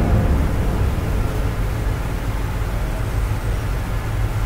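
A steady low rumble with a faint hiss above it, even throughout, with no distinct events: the background noise of the room.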